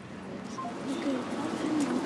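A pigeon cooing: a low, wavering call in the second half.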